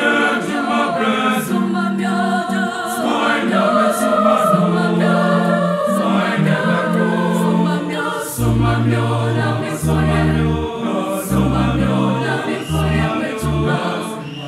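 A mixed choir singing a gospel song in parts, with keyboard accompaniment; a deep bass line comes in about eight seconds in.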